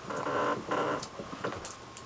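Clothing rustling close to the microphone as a person moves in and sits back down, with a few light clicks and knocks.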